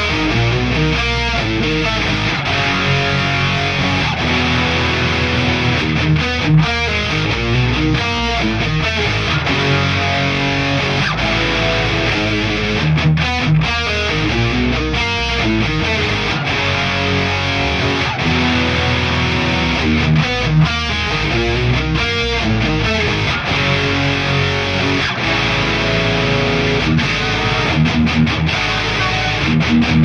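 Drumless thrash metal backing track: distorted electric guitar riffing with no drums.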